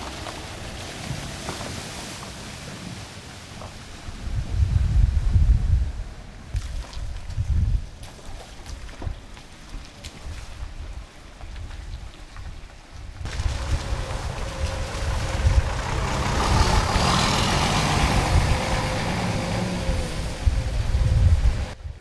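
Cars driving slowly along a rutted, waterlogged dirt road, engine rumble and tyres in mud and puddles. Loudest as one passes about five seconds in, and over a longer pass in the second half.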